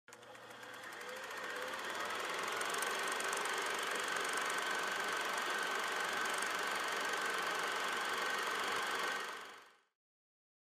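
Film projector running steadily, a mechanical whir that fades in over the first couple of seconds and fades out near the end.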